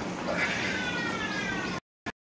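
A single long, drawn-out animal-like call, falling slowly in pitch, that breaks off suddenly near the end.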